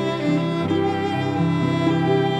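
Live chamber ensemble of violin, cello and digital piano playing a slow piece, held bowed notes over piano chords.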